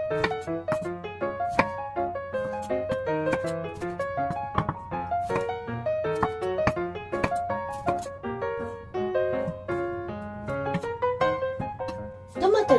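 Background piano music: a light melody of single notes. Sharp knocks of a knife on a wooden cutting board come through at irregular intervals as tomatoes are cut into wedges.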